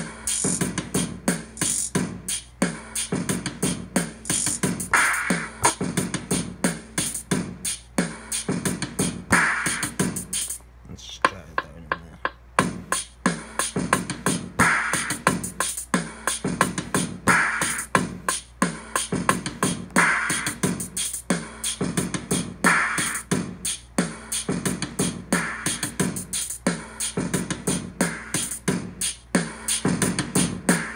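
Hip-hop drum-machine beat played back from an Akai MPC Live: a fast run of hi-hat ticks and kicks, with a snare that rings on about every two and a half seconds. The beat thins out for about a second and a half around eleven seconds in, then comes back.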